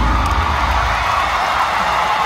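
A large arena crowd cheering and whooping as a song ends. The band's bass and music drop away in the first half-second, leaving the crowd noise with a few rising and falling shouts.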